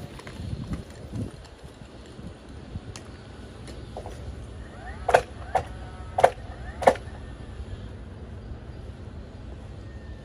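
Four sharp bangs about half a second apart a little past the middle, each with a short ring: nails being driven into the wooden deck frame.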